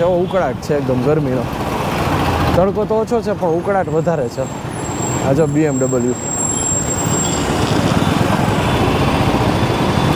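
A motorcycle engine running steadily while being ridden through busy street traffic, with a person talking in short spells during the first six seconds; the last few seconds are the engine and traffic alone.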